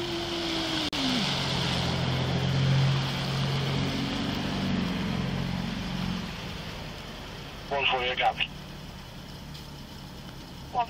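Road traffic noise on a wet road: a vehicle's engine and tyre hiss swell to a peak about three seconds in and fade away, over a steady low engine hum. A short voice is heard near the end.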